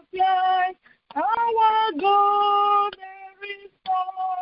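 A high, unaccompanied solo voice singing long held notes in short phrases, with brief silent gaps between the phrases; the singing grows softer near the end.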